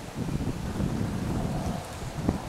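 Wind buffeting the microphone: a low, uneven rumble that swells about a quarter second in and carries on in gusts.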